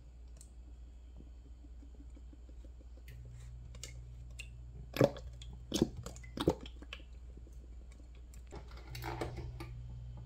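Olive oil poured from a bottle into a stainless steel pot, with three loud sharp clicks or knocks near the middle, and softer handling noise near the end.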